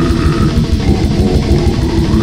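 Brutal death metal demo recording: heavily distorted electric guitars and bass playing a riff over fast, dense drumming, loud and unbroken.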